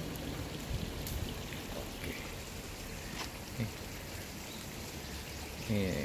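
A steady rustling hiss with a few faint clicks and taps spread through it.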